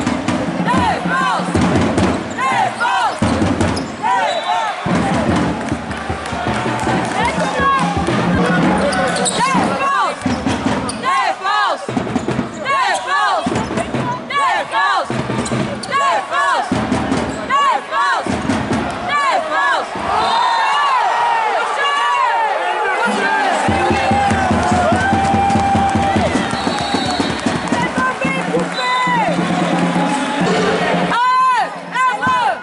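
Basketball game in play: the ball bouncing and sneakers squeaking on the hardwood court, over arena background music and voices.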